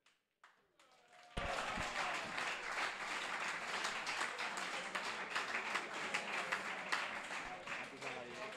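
A few light clicks of the cue and pool balls, then audience applause starting suddenly about a second and a half in and carrying on steadily, with a few voices among it: the crowd applauding a won frame.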